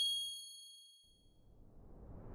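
A bright, high electronic chime rings out and fades away over about a second and a half. Near the end a rising whoosh begins to swell. Both belong to a logo-animation sound effect.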